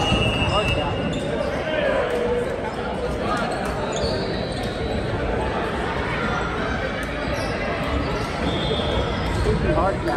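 Busy indoor gym ambience: volleyballs thudding on the hardwood floor and off hands, occasional short sneaker squeaks, and the overlapping chatter of players, all echoing in a large hall.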